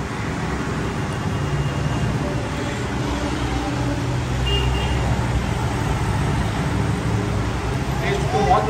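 Road traffic noise with a motor vehicle's engine rumbling, growing gradually louder. A brief high beep comes about four and a half seconds in.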